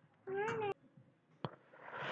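A cat meowing once, a short call of about half a second that rises and then falls in pitch. A single sharp click follows.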